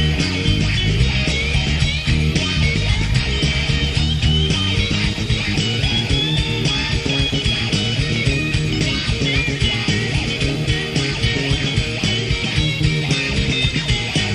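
Instrumental break in a rock song, led by guitar over bass.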